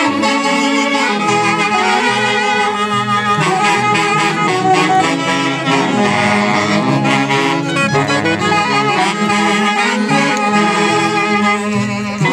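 Saxophone section of an Andean orquesta típica playing a melody live, with a moving bass line underneath.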